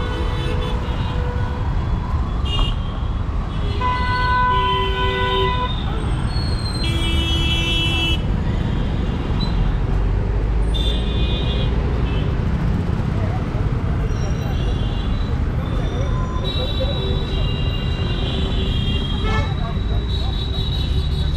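Busy city road traffic with a steady rumble of vehicles, and horns honking several times with toots of different pitches, some held for a second or more. People's voices are in the background.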